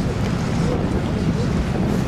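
Wind buffeting the microphone: a steady low rumble that rises and falls constantly, with no distinct events.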